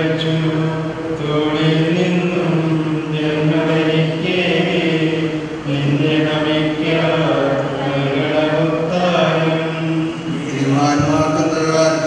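Men's voices chanting a funeral hymn, holding long steady notes that shift in pitch every second or two, amplified through the church's microphone.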